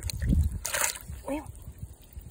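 A short splash of water as a small bass is let go into shallow water, about three quarters of a second in, after some low handling thumps.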